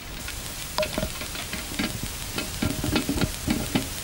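Irregular sharp clicks and crackles over a steady noisy background, several a second and growing denser after the first second.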